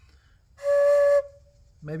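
A wooden Native American flute from a flute-making kit sounds one short test note of about half a second, breathy with plenty of air noise, then fades. The note tests the flute's voice after the track and sound-hole edge have been cut and burned, and the flute is still airy because that work is unfinished.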